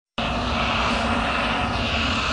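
A steady rushing, droning sound effect for a glowing energy aura, starting abruptly just after the beginning, with a low hum beneath it.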